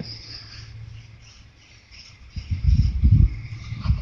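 A faint, steady high-pitched chirring in the background. About two and a half seconds in, low rumbling bumps and rubbing come right at the microphone as the horse's head comes up against the phone.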